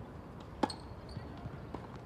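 A tennis racket striking the ball on a serve: a single sharp crack about half a second in.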